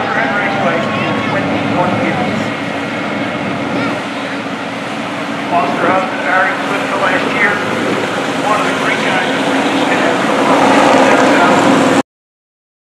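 Vehicle engines running steadily, mixed with indistinct voices of people close by.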